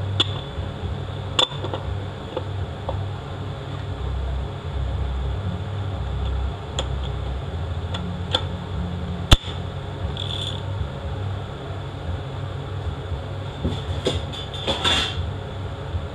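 Scattered sharp metal clicks and clinks as clutch steels and a drum are seated by hand into a CD4E automatic transmission case. One click is sharper about nine seconds in, and a short run of rattling clicks comes near the end, over a steady low hum.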